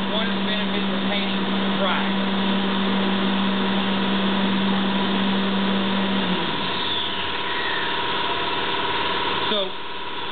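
Workshop machinery running: a steady electric-motor hum over loud rushing air. About six seconds in the hum winds down in pitch and fades, while the air noise carries on.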